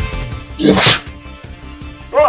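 Background music cuts out, then a man gives one short, sharp breathy shout, like a fighting 'hah!', about half a second in.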